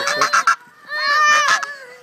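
A goose honking in a few short, harsh calls at close range, followed about a second in by a young child's wavering cry.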